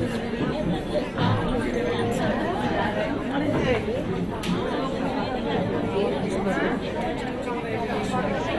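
Crowd chatter: many people talking at once in a large hall, with no single voice standing out.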